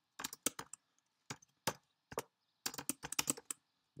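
Typing on a computer keyboard: quick keystroke clicks in short bursts, with brief pauses between the bursts.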